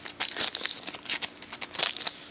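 Foil trading-card pack wrapper crinkling in the hand as the pack is handled: a quick, irregular run of sharp crackles.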